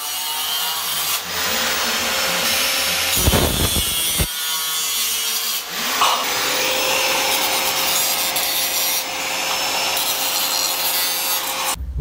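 Angle grinder with a cutting disc slicing through metal drywall studs: a steady motor whine under the hiss of the disc biting the metal.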